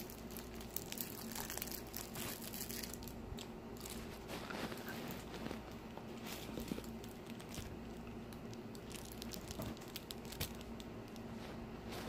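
Gum being chewed close to a phone's microphone: irregular small clicks and smacks, with faint rustling from the phone being handled.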